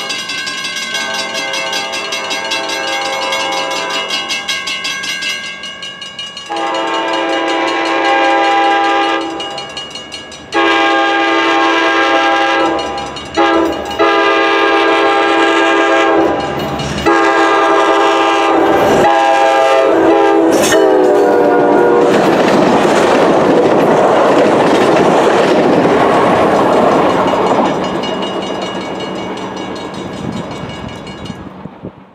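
Locomotive air horn sounding a series of long blasts for a grade crossing as the train approaches, the last blast dropping in pitch as the locomotive passes. Then the train runs by with a loud rumble and clatter of wheels on rail that fades near the end.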